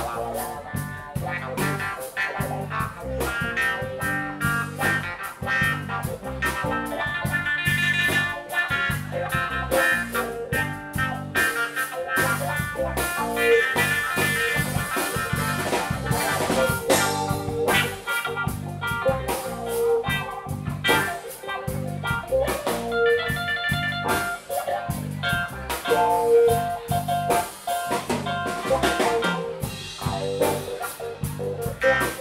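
Live rock band playing: electric guitar lines over bass guitar, keyboards and a drum kit, with an even run of cymbal hits and a repeating bass pattern.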